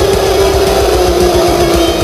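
A young man's long, loud yell, one held note that slowly sinks in pitch and ends near the end, over loud heavy-metal guitar music.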